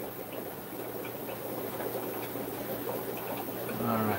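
Steady bubbling of fish-room aeration, air lines and filters running in the tanks, over a steady low hum.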